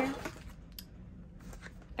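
Quiet handling of a ring-bound paper planner and a pen on a desk, with one sharp click a little under a second in and a few fainter ticks after it.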